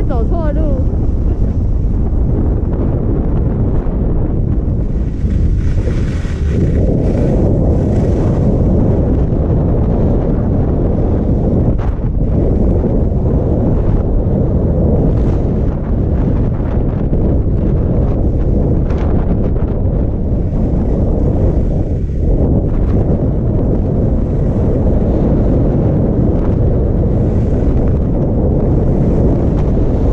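Wind rushing over an action camera's microphone as a skier gathers speed downhill, a steady roar that grows fuller about six seconds in.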